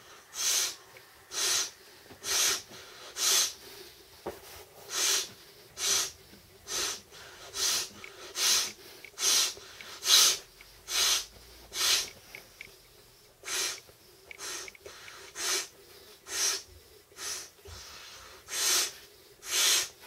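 A person breathing in quick, even breaths, a little more than one a second, while blowing up an Intex air bed by mouth.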